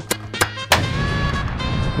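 A hammer tapping a screw into a metal jar lid twice, then a harder blow about three quarters of a second in that sets off a long explosion sound effect, over background music.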